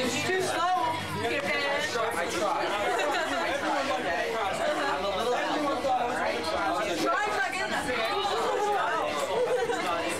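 Many people talking at once in a crowded room, a steady babble of overlapping voices with no single voice clear.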